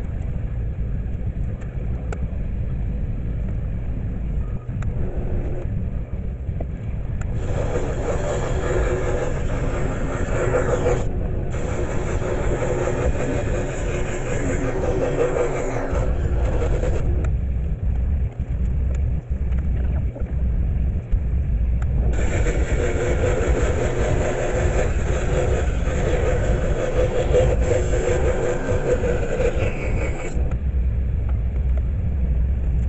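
Scroll saw running with a steady low hum, its reciprocating blade cutting through a wooden panel in two long stretches, the first about a third of the way in and the second over the last third.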